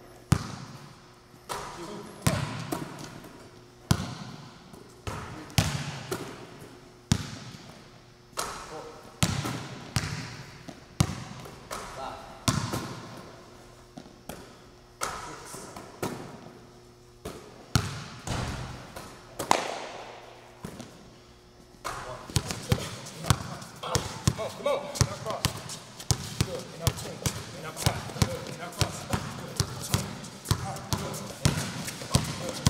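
Basketball bouncing on a gym floor, single bounces about every second or so with a ringing echo from the hall. From about two-thirds of the way in, rapid dribbling, several bounces a second.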